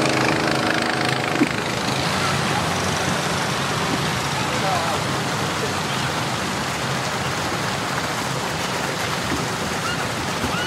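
Several bumper boats running on a pool: a steady motor hum mixed with splashing water, the hum clearest in the first second or so.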